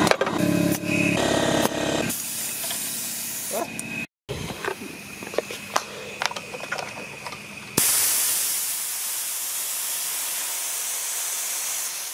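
Small portable air compressor's motor running for about two seconds, then a hiss of air with scattered clicks as the hose is worked. A short break in the sound about four seconds in. From about two-thirds through, a long steady hiss of compressed air let out through the compressor's pull-ring safety valve.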